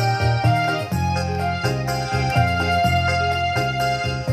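Qasidah music played on an electronic keyboard: a melody with a long held note over a steady bass line.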